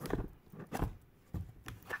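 A rigid cardboard perfume gift box being handled as its lid is lifted off: a few short soft knocks and scrapes of card, the loudest just under a second in.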